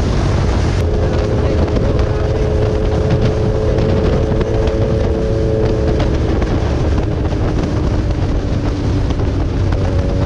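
Rusi Sigma 250 cc motorcycle engine running at steady cruising revs, heard from the rider's seat with heavy wind rumble on the microphone; its exhaust note is meant to sound like a big bike. The engine note eases slightly lower in the second half.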